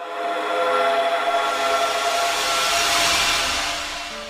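Logo-reveal swell sound effect: a cluster of held tones beneath a rising hiss that builds to a peak about three seconds in, then fades away.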